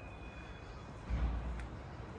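Quiet low rumble of parking-garage background noise, with a brief low bump a little after a second in.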